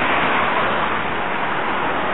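A steady, loud hiss of white smoke pouring out of the open engine bay of a Range Rover in trouble.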